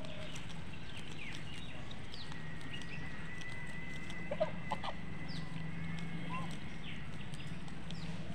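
Farmyard fowl: two short calls close together about halfway through, over a steady low hum and scattered brief high bird chirps.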